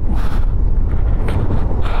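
Heavy wind buffeting the microphone of a moving motorcycle, with the bike's engine running underneath.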